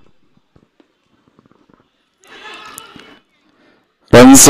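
Mostly quiet open-air ambience with a few faint clicks, then faint distant voices calling out for about a second past the middle.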